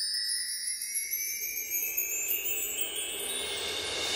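Twinkling chime sound effect, many bell-like tones sliding slowly upward in pitch, with a hiss swelling near the end.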